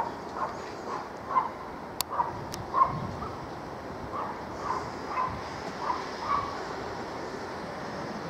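A dog barking repeatedly, roughly twice a second, over the faint steady running of a distant approaching rail track machine; two sharp clicks about two seconds in.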